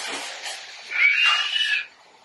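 A high-pitched, cat-like squealing cry lasting about a second, preceded by a steady hiss.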